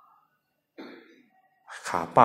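A single short cough about a second into a pause in speech.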